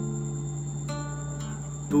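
Nylon-string classical guitar chord ringing on between sung lines, with fresh notes sounding about a second in. A faint steady high-pitched whine runs underneath.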